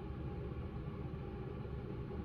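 Quiet, steady background room noise with a low hum and no distinct event.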